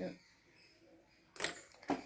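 Two short light clicks about half a second apart, small plastic toy bicycle parts set down on a plastic tabletop.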